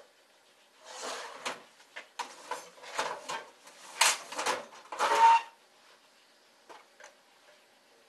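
Block of ski wax hot-rubbed against a waxing iron on a ski base: a run of short, irregular scraping strokes for about five seconds. It then goes quiet, with two faint clicks.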